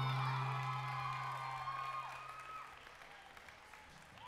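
The routine's music ends on a low held chord that fades out over about three seconds, while the audience applauds and whoops.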